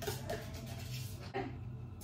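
Metal spoon scraping yogurt from a cardboard carton, faint soft scrapes with a light tap about a second and a half in, over a low steady hum.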